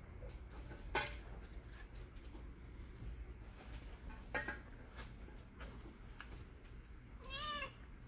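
A cat meowing: a couple of short, faint calls, then a clearer meow near the end that rises and falls in pitch.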